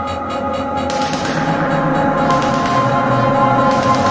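Progressive trance track going into a breakdown. The pulsing beat drops out within the first second, leaving sustained synth chords under a rising wash of high noise that builds gradually in loudness. The low kick comes back right at the end.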